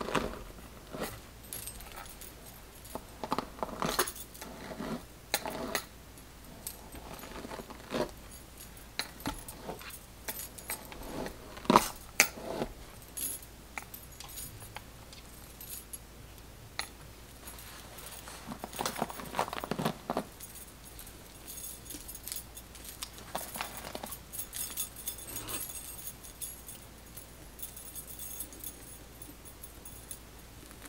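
Metal bangle bracelets clinking and jangling on the wrists as hands brush and finger-detangle a doll head's synthetic hair, with soft rustling of the hair between the irregular clinks. The loudest clinks come a little before the middle.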